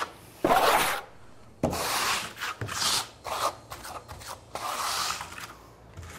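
Trowel scraping wet Backstop NT texture coating across wall sheathing, in a series of rough strokes about half a second to a second long, with short gaps between them.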